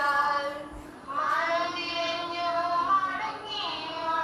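A high-pitched voice singing a melody with long held notes, pausing briefly just before a second in and then going on.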